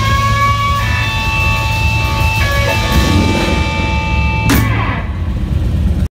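Live rock band with electric guitars holding sustained notes over bass and drums. A guitar note rises in pitch right at the start, and a sharp cymbal-like hit comes about four and a half seconds in, then rings out.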